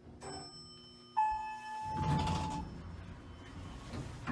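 Dover Oildraulic hydraulic elevator arriving at a landing. After a click, a single chime rings out about a second in. A steady low hum then stops, and the single-speed car door slides open with a rumble.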